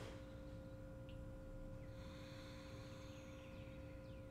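Faint steady hum made of two held low tones, over quiet background noise.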